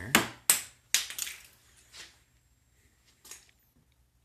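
Three sharp knocks about half a second apart, followed by a few fainter ones.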